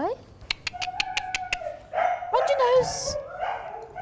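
A Siberian husky vocalising: a rising whine at the start, a held whine, then wavering, howl-like calls in the second half. A rapid run of about a dozen clicks comes in the first second and a half.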